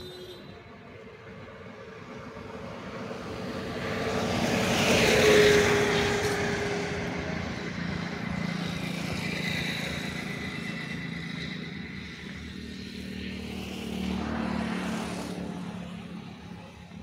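A motor vehicle passing by on the road, growing louder to a peak about five seconds in, dropping slightly in pitch as it goes past, then fading; a second, quieter vehicle rises and fades near the end.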